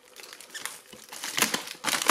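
Plastic packaging crinkling as hands pull at the wrapping: faint at first, then a run of irregular loud crackles in the second half.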